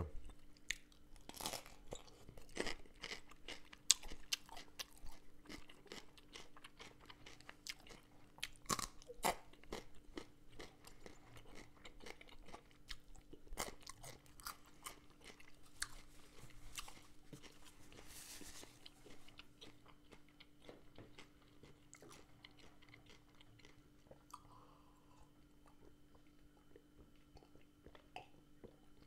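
Close-miked crisp crunching and chewing of a pink beet-pickled cabbage leaf (pelyustka): many crunchy bites and chews that thin out and grow fainter over the last several seconds.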